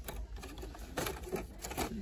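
Hot Wheels blister-pack cards, cardboard backs with plastic bubbles, clacking and rustling against each other as a hand flips through them in a cardboard display box: a quick, irregular run of light clicks.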